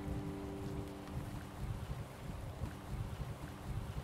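Wind buffeting the microphone, an uneven low rumble, while the last chord of a Martin D-35 acoustic guitar rings out and fades away within the first second.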